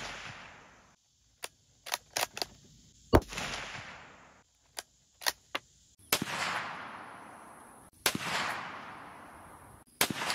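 Rifle shots from a 300 Blackout bolt-action rifle: three sharp reports about three, six and eight seconds in, each trailing off over a second or two. Short clicks come between the shots.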